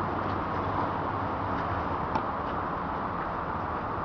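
Tennis ball struck back and forth by rackets in a rally, heard as a few faint knocks, the clearest about two seconds in, over steady outdoor background noise.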